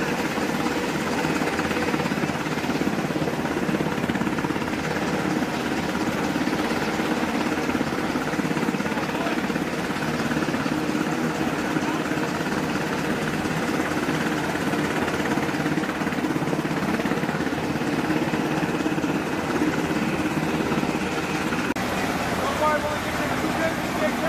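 MH-60 Seahawk helicopter sitting on deck with its rotors turning: a steady, even turbine and rotor noise.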